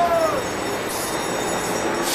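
A bus driving past close by, with steady engine and road noise. A high squeal at the very start falls in pitch and stops within half a second.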